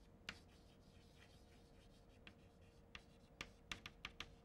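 Chalk faintly tapping and scraping on a chalkboard as a word is written out: a single click early, then a quick run of sharper taps near the end.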